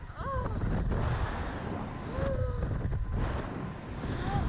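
Wind buffeting the microphone of the onboard camera on a slingshot ride capsule as it swings through the air: a heavy low rumble with rushing noise. Two short voice sounds from the riders come through it, one about a third of a second in and one a little past two seconds.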